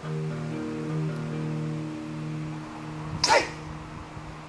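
Background music with sustained notes; about three seconds in, a single loud chop as a steel sword blade strikes a wooden pole standing in for a spear shaft, biting in without cutting through.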